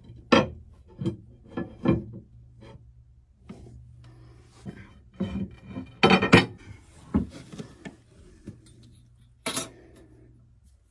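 Long aluminum mounting plates being shifted and set down on a fiberglass engine bed: a series of light knocks and scrapes of metal on fiberglass, with a busier cluster about six seconds in.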